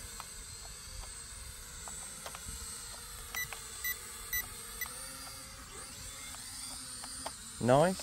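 K3 E99 toy quadcopter in flight, its propellers a thin steady whine that wavers and rises a little past the middle. Four short electronic beeps come in quick succession around the middle.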